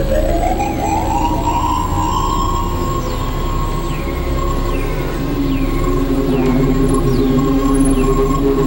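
Experimental synthesizer drone music. A tone glides up and settles into a held high note over layered low drones. Short falling chirps repeat a little more than once a second through the middle, and a wavering lower tone swells near the end.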